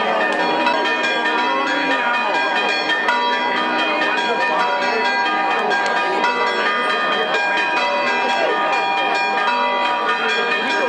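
Church bells ringing in a continuous peal, with rapid strikes whose tones ring on and overlap. A crowd chatters underneath.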